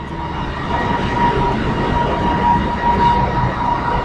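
Light rail train running alongside an elevated station platform: a steady rumble, swelling a little and easing near the end, with a thin steady high tone over it.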